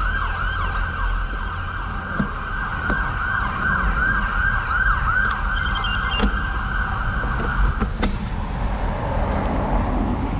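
Ambulance siren in a fast yelp, about three rising-and-falling sweeps a second, cutting off suddenly about eight seconds in. A steady low rumble of wind and road noise runs under it.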